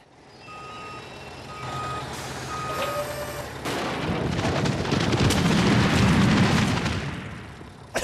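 Cartoon sound effects of a truck backing up, with three reversing beeps about a second apart over the engine's rumble. Then comes a long, rumbling clatter of a load of potatoes pouring down a chute into a cellar, swelling to its loudest near the end and then fading.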